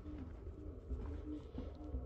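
A bird cooing: a steady run of short, low, repeated notes, each dipping slightly in pitch, over a faint low rumble.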